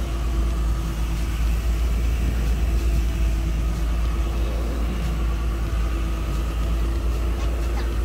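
Steady low engine rumble with a faint steady hum from a moving river cable ferry, heard from inside a car parked on its deck.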